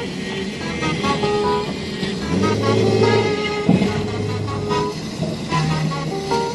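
A low-pitched vehicle horn sounds for about a second, a couple of seconds in, amid city street traffic.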